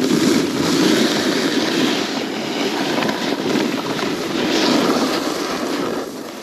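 Wind rushing over the microphone while moving downhill on a groomed ski slope, mixed with the hiss and scrape of edges sliding over packed snow; a loud, steady rush that wavers but never stops.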